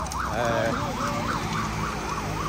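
Police escort siren in a fast up-and-down yelp, about three sweeps a second, over a low traffic rumble.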